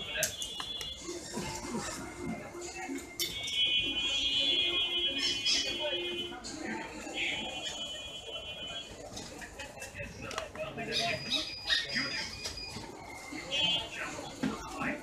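Busy background of voices and music, with several long, high electronic tones held for a few seconds at a time.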